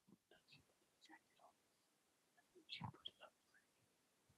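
Near silence with faint whispering: a few soft, scattered words, the clearest a little under three seconds in.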